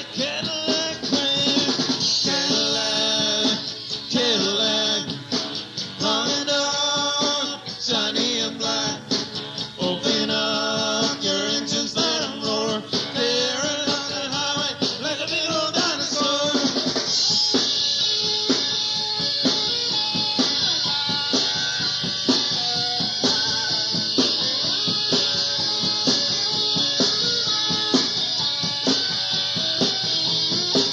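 Live rock band playing an instrumental break: a lead guitar line with bending notes over drum kit and bass, giving way a little over halfway to a steady cymbal wash over the drums.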